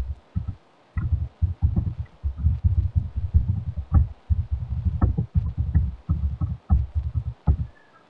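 Computer keyboard typing: a quick, irregular run of keystrokes heard as dull thuds, stopping shortly before the end.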